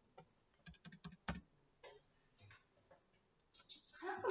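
Faint computer keyboard keystrokes, a scattered run of irregular taps, the loudest about a second and a quarter in, as a word is typed.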